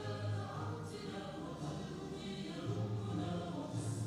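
A choir singing an anthem with instrumental accompaniment, in steady sustained phrases.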